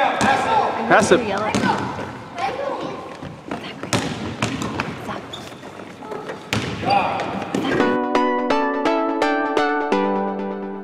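Sounds of a children's basketball game in a gym: kids' voices and a basketball bouncing on the court, with a few sharp thuds. About eight seconds in this gives way to music, a steady run of plucked, keyboard-like notes.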